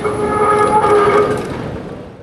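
A horn sounding a steady chord of several tones, held for about a second and then fading out.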